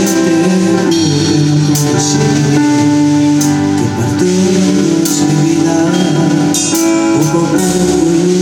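Live band playing a pop ballad on electric guitar, bass guitar and drums, with several cymbal crashes.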